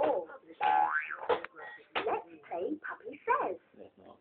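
Electronic children's activity toy playing short voice clips and sound effects as its buttons are pressed, with a rising, boing-like electronic glide about half a second to a second in.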